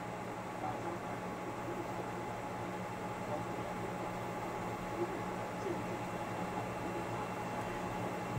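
Steady low hum and hiss of running electronic equipment, with no distinct events.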